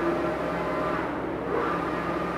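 Focus Atlas 1311 UV flatbed printer running a test print, its print carriage travelling across the gantry with a steady mechanical whir.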